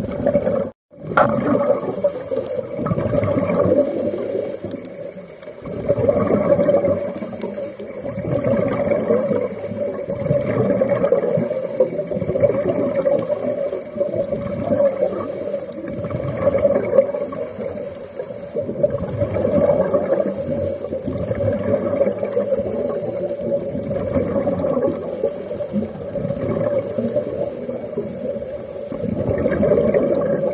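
Underwater sound of scuba diving: a diver breathing through a regulator, with rushes of exhaled bubbles that swell and fade every few seconds over a steady hum. The sound drops out briefly about a second in.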